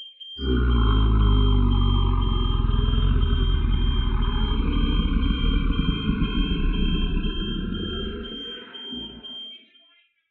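Loud, low rumbling sound effect from an augmented-reality comic's soundtrack. It starts about half a second in and fades out near the end, over a thin steady high-pitched tone.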